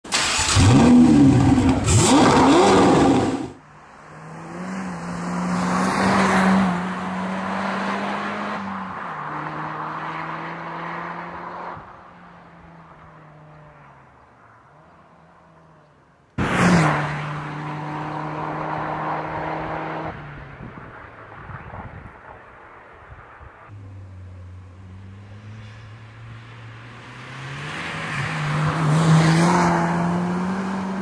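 Mitsubishi Colt CZT's turbocharged 1.5-litre four-cylinder engine, modified, revved hard for the first few seconds. It is then heard in several separate drive-by shots, with the engine note swelling as the car nears and fading away, and swelling again near the end.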